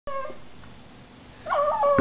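Pug howling: a short howl trailing off at the very start, then, about one and a half seconds in, a new howl that wavers up in pitch and back down.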